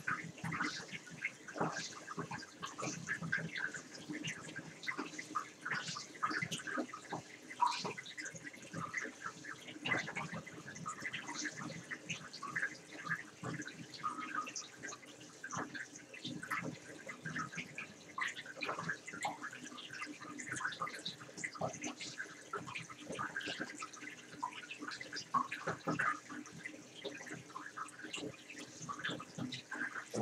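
Water trickling and splashing in a small enclosure water basin, with a steady run of irregular drips and small splashes.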